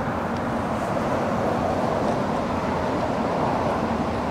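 Steady road traffic noise: an even, continuous rumble with no distinct events.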